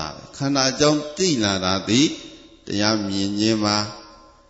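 A man's voice in a chant-like recitation, phrases sung on gliding pitches and then one long held note before it stops near the end.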